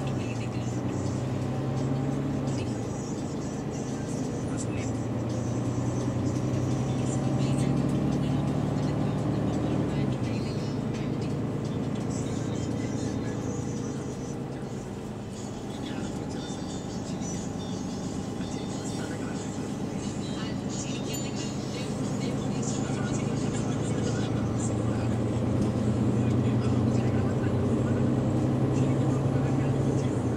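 Interior of a moving GAL MEC6 city bus: a steady engine and drivetrain drone that shifts pitch a few times and eases off in the middle before building again, with passengers talking and small rattles.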